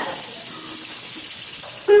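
Snake-hiss sound effect: a loud, steady, high hiss that stops at the end as a voice comes in.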